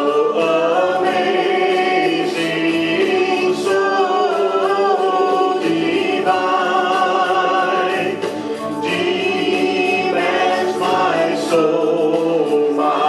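A man and a woman singing a gospel song together as a duet into handheld microphones, sustained sung notes with no break.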